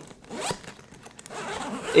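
A backpack zipper being pulled, with a quick run of small clicks from the zipper teeth.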